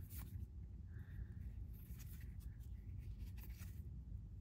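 Faint handling sounds of baseball trading cards being slid off a stack one at a time in the hand: soft papery swishes of card stock rubbing on card stock, with light flicks as each card comes free.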